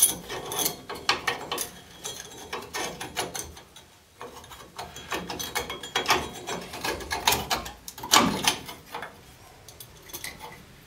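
Steel rear drum brake shoes, strut bar and springs of a 2002 Dodge Dakota clicking, clinking and scraping against the backing plate as they are fitted by hand, in irregular short clicks. There is a brief lull about four seconds in and a louder clank about eight seconds in.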